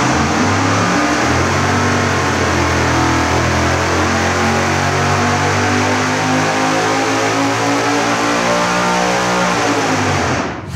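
Supercharged 555-cubic-inch big-block Chevy V8 with an 8-71 blower, running on E85, at full throttle on an engine dyno. Its note climbs steadily in pitch as the revs sweep up through the pull.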